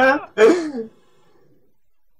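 A man's loud drawn-out vocal outburst ends right at the start, followed by a short laugh that falls in pitch. After that it is quiet for about the last second.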